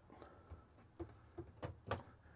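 A few faint clicks and taps from the plastic clips on a camper window's privacy-shade rail being worked by hand, about five in two seconds.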